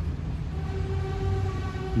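Low rumble of a BMW M440i coupé rolling slowly across a lot, its 3.0-litre turbo straight-six barely above idle. A steady pitched tone comes in about half a second in and holds.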